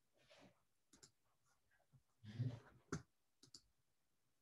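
A few faint computer clicks over near silence, with a short, louder thump about two and a half seconds in.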